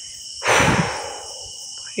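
A single deep breath, close on the microphone, about half a second in and fading away over about a second. Crickets chirr steadily behind it.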